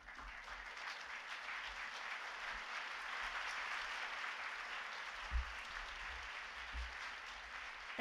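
Audience applauding, swelling over the first second and then holding steady. Two dull low thumps come in the second half.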